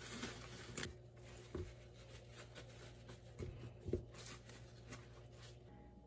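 Faint rustling and soft patting of a paper towel pressed over wet lotus root slices in a plastic colander, with a few light taps along the way.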